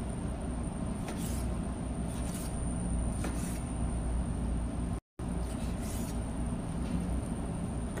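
Chef's knife cutting raw chicken breast on a wooden board: several irregular knocks of the blade on the board over a steady low hum. The sound cuts out for an instant about five seconds in.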